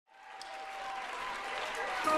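Concert audience applauding, fading in from silence and growing louder, with a faint held tone during the first second.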